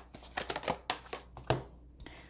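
Oracle cards being handled as one is drawn from the deck and laid on the spread: a string of light card clicks and taps.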